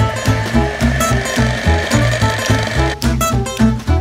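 Electric hand mixer running steadily, beating an egg into creamed butter mixture, for about three seconds before it stops suddenly, under background music with a steady beat.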